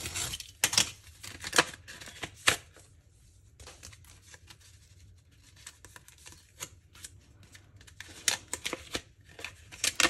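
A paper mailing envelope being cut open with a small cutter, then paper rustling and crinkling as the card envelope inside is handled and opened, with scattered light clicks and taps. The handling is busiest in the first few seconds and again near the end, with a quieter stretch between.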